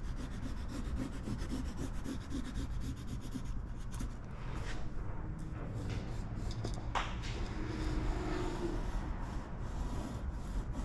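Pencil scratching and rubbing across transfer tape laid on a car's painted panel as lines are drawn along the body seams, with small ticks and one sharper click about seven seconds in.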